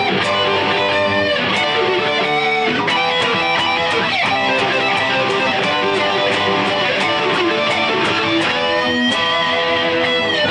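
Two electric guitars played together. One sweep-picks arpeggios through the E minor, C major, G major and D major progression while the other plays power chords under it. A held note bends in pitch near the end.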